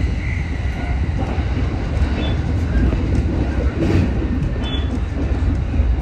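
Running noise of a JR Chuo Line electric train heard from on board: a steady low rumble of wheels on rail as it rolls through pointwork, with a couple of brief faint high squeals.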